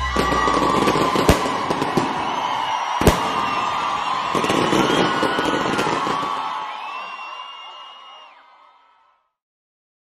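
Fireworks sound effect in the mix: a dense crackle with sharp bangs, the loudest about three seconds in, and wavering whistles. It fades away and ends about nine seconds in.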